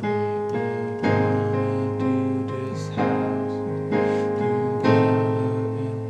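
Piano playing an A-flat major chord with an added B-flat in the right hand over A-flat and E-flat in the left, restruck several times and left to ring between strikes.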